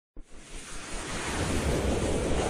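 Whoosh sound effect for an animated logo intro: a rushing noise with a deep low rumble starts suddenly and swells steadily louder.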